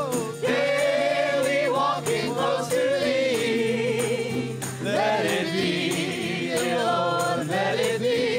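Live church worship music: singing with held notes that waver in vibrato, over band accompaniment and a steady percussion beat.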